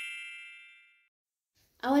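Tail of a bright, shimmering chime sound effect for a title card, its ringing tones fading out about a second in. A woman starts speaking near the end.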